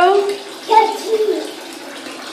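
Steady rush of water running into a bathtub, with a toddler's short vocal sound about a second in.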